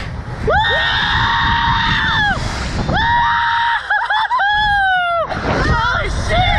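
Riders screaming as the Slingshot reverse-bungee ride launches them: two long, high-pitched screams, the second breaking up and sliding down in pitch at its end. A steady low rumble of wind buffets the microphone underneath.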